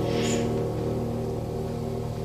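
Slow violin and grand piano music: a low, full piano chord struck just before rings on and slowly fades, as the piece's repeated ostinato chords do.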